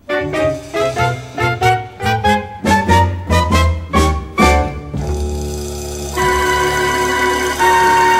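Instrumental break of a musical-theatre song with a swing feel: the orchestra plays a run of short notes climbing steadily in pitch, then holds long sustained chords from about six seconds in.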